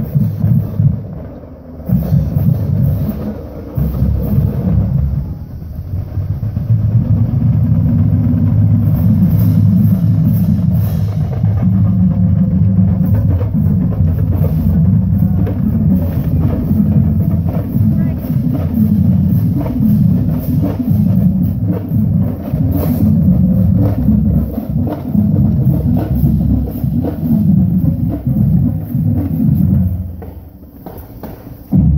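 A high school marching band's drumline playing a parade cadence on snare and bass drums while marching, with short breaks in the first few seconds, then playing on without a break.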